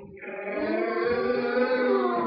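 Children singing together in long held notes, growing louder over the first half second.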